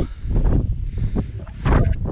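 Wind buffeting the camera's microphone in uneven gusts, a deep rumble with a stronger gust near the end.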